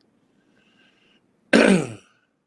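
A man clears his throat once: a short, loud rasp that falls in pitch, about a second and a half in.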